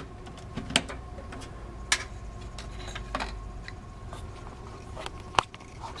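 A few small, sharp clicks and taps of power cables and plastic connectors being handled inside an open computer case, the sharpest near the end, over a steady low hum.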